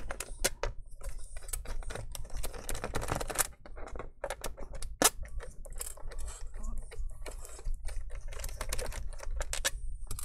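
Phillips screwdriver and small screws clicking and tapping against a laptop's bottom cover as the screws are backed out and handled: irregular sharp clicks, the loudest about five seconds in.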